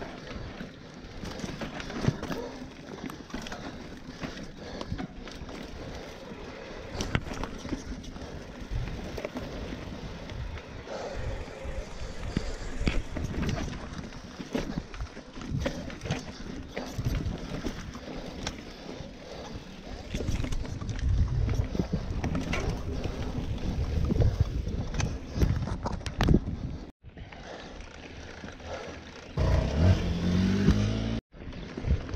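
Mountain bike riding down a rough dirt and rock trail: tyres rumbling over the ground, with frequent knocks and rattles from the bike jolting over bumps. Right at the end a motorcycle engine comes in, rising in pitch.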